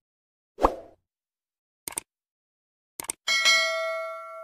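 A short knock, two quick double clicks, then a loud bell-like metallic ding that rings on for over a second with several steady tones.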